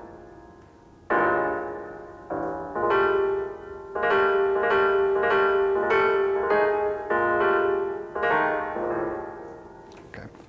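Solo piano recording played back: a passage of struck chords, each ringing and decaying, over a repeated middle note, beginning about a second in and tailing off near the end. This is the piece re-recorded at a slower tempo of 100 instead of the original 120, to test whether the hand-forced forte still sounds.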